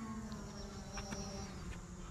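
Faint, steady hum of a small electric RC airplane motor and propeller, weakening near the end.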